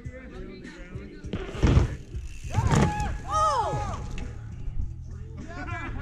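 A mountain bike and its rider slamming down onto grass after a jump off a wooden kicker ramp. There is one loud thud about a second and a half in, the rider slipping out on the landing, and it is followed by shouted exclamations.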